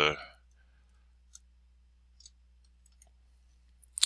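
A few computer mouse clicks, faint at first, with a louder pair near the end, over a low steady hum.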